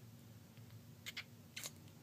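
Faint wet clicks of a young kitten suckling on a nursing bottle's rubber nipple: two quick smacks about a second in, then a slightly longer, louder one soon after.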